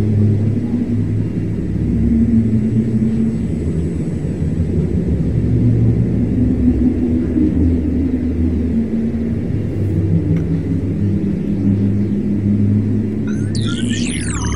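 A loud, low rumbling drone with slowly shifting low tones. Near the end, swooping high electronic tones begin to glide in over it.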